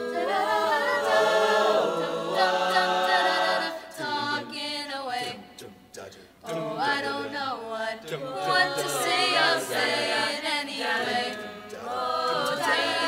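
Mixed high school choir singing a cappella, several vocal parts moving in harmony. The singing drops away briefly about five to six seconds in, then picks up again.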